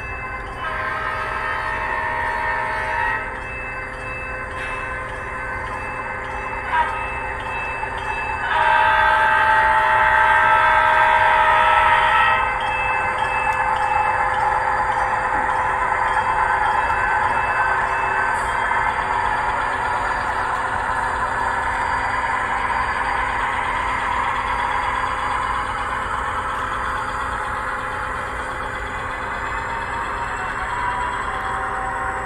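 Model diesel locomotive's onboard sound horn blowing for a grade crossing: a long blast, a brief short one, then a longer blast. It is followed by the steady running of the locomotives' sound-system diesel engines and the rolling noise of the train passing.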